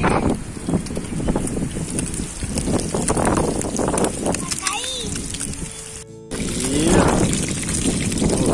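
Fish pieces frying in hot oil in a pan on a portable gas stove, a steady crackling sizzle. The sound cuts out briefly about six seconds in.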